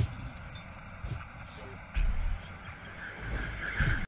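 Intro sting for an animated title card: music with swooshing effects, a deep low hit about two seconds in, and a rising swell that cuts off sharply at the end.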